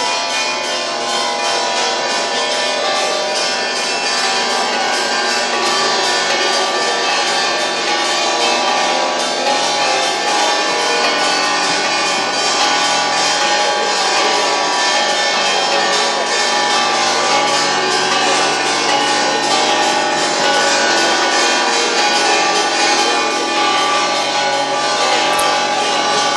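Church bells ringing a festive peal, many overlapping ringing tones sounding without pause.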